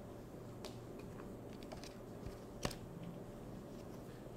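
Paper flash cards being handled and shuffled: faint rustling with small scattered clicks and one sharper tap a little past halfway, over a low steady hum.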